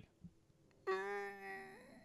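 A man's wordless held vocal tone, about a second long, steady in pitch and then dropping near the end. It is a mock-frightened noise that acts out alarm, in place of words.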